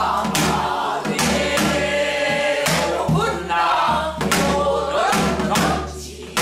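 A woman singing pansori in a full, strained voice with wide pitch glides, over sharp strokes on a buk barrel drum that fall at uneven intervals, about eight in six seconds.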